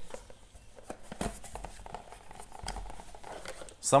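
A cardboard whisky box is opened and the bottle pulled out of it: card scraping and rustling, with a few sharp knocks. A man starts speaking near the end.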